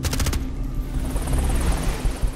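Film trailer sound effects: a fast rattling burst of sharp cracks at the very start, then a steady rushing noise over a low rumble.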